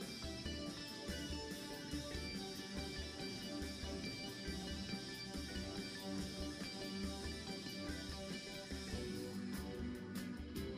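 Live electric guitar and drum kit music with a steady beat, the guitar playing over the drums; sharper hits stand out near the end.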